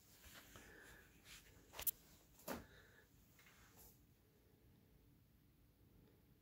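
Near silence: quiet room tone with a few faint rustles and two soft clicks about two and two and a half seconds in, handling noise from the camera being moved.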